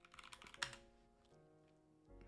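A few quick keystrokes on a computer keyboard in the first second, faint, over soft background music with held notes.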